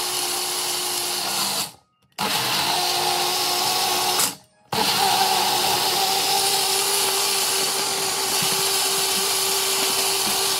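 Tribest personal blender's motor running, blending a fruit smoothie in its jar. It is a steady whir with a hum, cut off twice for a moment, about two seconds in and again about four and a half seconds in.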